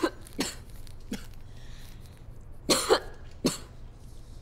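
A woman with a cold coughing in short bursts: a few single coughs, a quick double cough near three seconds in, and one more after it.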